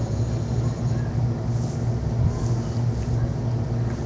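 Steady low hum with a faint hiss: background noise picked up by a webcam microphone, with no music or singing.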